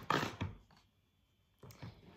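A few clicks and handling noises from a cardboard tea advent calendar being opened, broken by about a second of dead silence, then faint handling again near the end.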